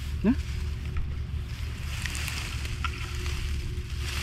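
Steady low rumble of wind buffeting the microphone, with a short rising vocal sound just after the start and a faint rustle about two seconds in.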